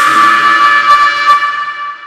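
Loud edited sound effect that starts suddenly: a horn-like blast of several steady tones held together, dying away over about two seconds.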